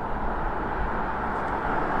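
A car approaching along a paved road, its tyre and engine noise a steady rush that slowly grows louder.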